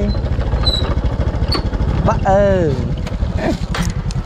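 Honda scooter's small single-cylinder engine running as it rides over a dirt track, with rapid low pulsing throughout. A person gives a drawn-out vocal call that falls in pitch about two seconds in.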